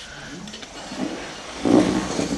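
A chair scraping and creaking and a classical guitar being handled as a player sits down with it, the loudest scrape coming near the end.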